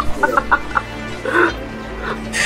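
Short, choppy bursts of laughter, a cackling run in the first second and another burst about a second later, over steady background music.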